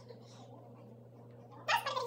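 A short pitched animal cry, like a pet's, near the end, over a steady low hum.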